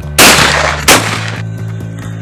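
Two shotgun shots from an over-and-under sporting shotgun, about 0.7 seconds apart, the first the louder, fired at a clay target that breaks.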